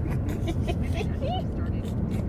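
Steady low rumble of a car on the move, heard from inside the cabin, with soft laughter and faint voices over it.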